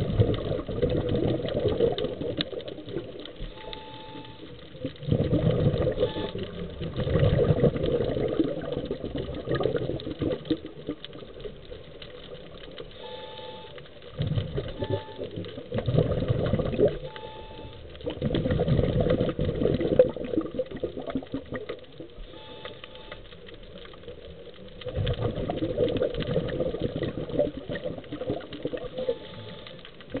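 Scuba regulator breathing heard underwater: five bubbly bursts of exhaled air, each lasting a few seconds, with quieter gaps for the inhalations between, some marked by a short faint tone.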